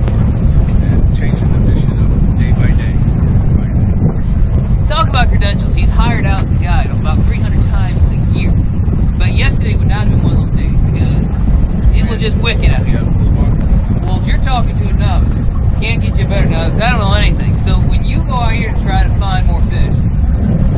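Men's voices talking in stretches over a loud, steady low rumble of wind buffeting the microphone on an open boat deck.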